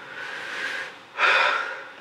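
A frightened woman breathing hard: a softer breath, then a louder, sharper breath in or out about a second in.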